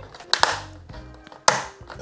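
Two sharp plastic clicks about a second apart as the marker panel is clipped into the robot charging dock's plastic base, over quiet background music.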